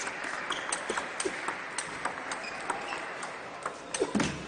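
Table tennis rally: the celluloid-type ball clicking sharply off the rackets and the table in a quick back-and-forth exchange, over the steady hiss of a large hall.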